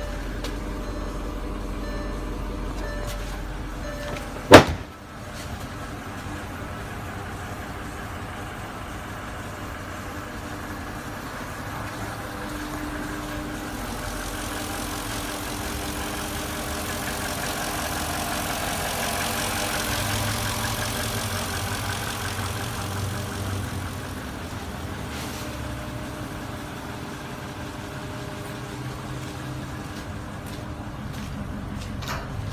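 A 4.5-litre V8 engine idling steadily, with one sharp, loud knock about four and a half seconds in. The engine sound swells a little in the middle.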